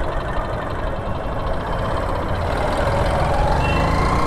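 Road traffic noise with a motorcycle engine slowly growing louder as it approaches.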